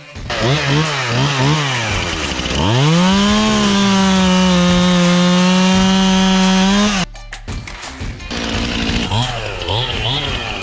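Chainsaw revved in a few short blips, then held at full throttle for about four seconds while cutting through the top of a wooden fence post. The sound cuts off suddenly, and short revs start again near the end.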